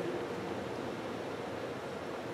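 Steady, even hiss of room tone with a faint steady hum.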